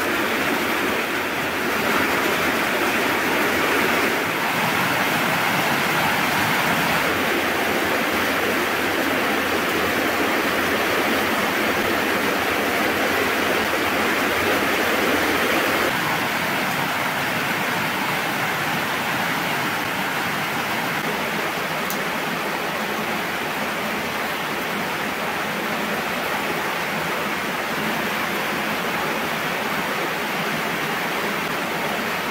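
Steady heavy rain, an unbroken hiss of falling water that shifts slightly in level a few times.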